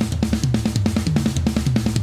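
Drum kit playing a fast, even run of single strokes around the drums, with bass drum underneath and some cymbal. The kit is triggered, and each hit sounds clean and clearly defined.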